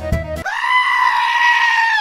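Music stops about half a second in and a single long, high scream sound effect takes over, held for about a second and a half and dipping in pitch as it cuts off.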